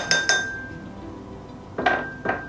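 Measuring spoon clinking against a small glass bowl as spice is measured and tapped in: three quick clinks at the start that leave a short ringing tone, then two more clinks near the end.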